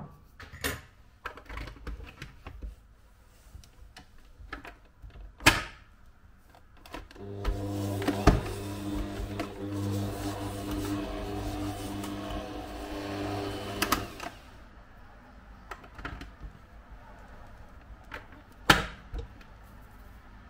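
Scattered knocks and clicks, then an electric stand mixer runs steadily for about seven seconds, its flat beater working butter into flour in a stainless steel bowl, before stopping. More knocks follow, with one sharp knock near the end.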